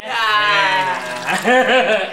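A person's voice in a long drawn-out call that falls in pitch over about a second, followed by a shorter wavering call.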